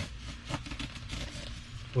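A not-very-sharp knife slicing through still-green fiberglass cloth, freshly wetted out with epoxy, along a wooden kayak's edge. It makes irregular scratching with a couple of small ticks.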